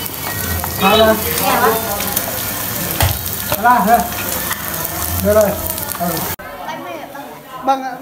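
Food frying in a hot pan, a steady crackling hiss under a man's talk. It cuts off suddenly about six seconds in.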